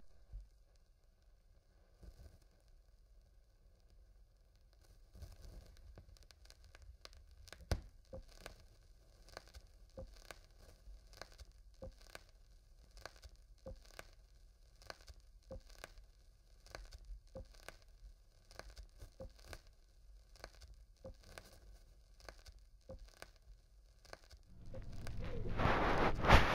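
Faint low rumble with soft ticks recurring about once a second, rising into louder rustling noise near the end.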